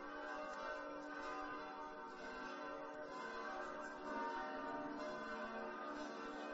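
Church bells ringing in a steady, overlapping peal, swelling slightly about four seconds in.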